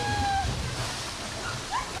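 A person plunging into a pool below a small waterfall: a loud splash and churning water that slowly settle. A long shout is heard in the first half-second and a short rising yelp near the end.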